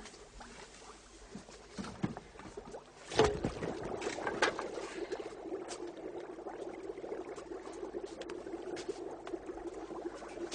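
Soup cooking in a pot: scattered small clinks and knocks, then a sharp knock about three seconds in followed by steady bubbling.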